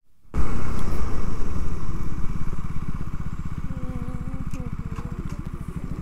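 Motorcycle engine running, heard from the rider's seat, with a steady pulsing exhaust note that is loud at first and then eases off as the bike slows.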